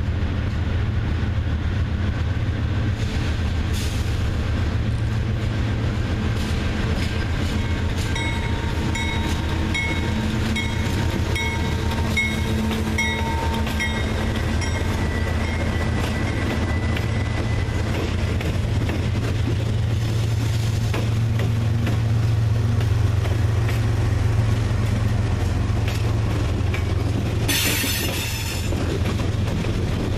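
Diesel locomotives of a CSX freight train running past close by, a steady deep engine rumble with the wheels on the rail. From about a quarter of the way in, a high tone pulses on and off for several seconds. Near the end there is a short burst of hiss.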